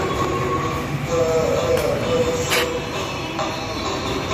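Dense, continuous street noise from traffic and a crowd, with a wavering melodic tone above it between about one and three seconds in.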